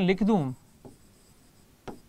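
Pen strokes on a writing board as words are written: a faint short stroke just under a second in, and a louder short stroke near the end.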